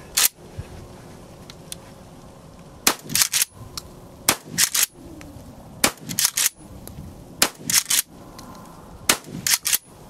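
Pardner Pump Protector 12-gauge pump-action shotgun (a Remington 870 clone) firing five shots about one and a half seconds apart. Each shot is followed by the quick clack of the pump being racked to chamber the next shell, and there is a single click just before the first shot.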